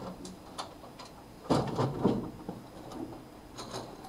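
Colored pencils clicking and rattling against each other as one is picked out and handed over: a few light taps, with a brief cluster of clatter about a second and a half in and a couple more clicks near the end.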